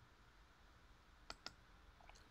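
Two quick, faint computer mouse clicks about a fifth of a second apart, over near-silent room tone.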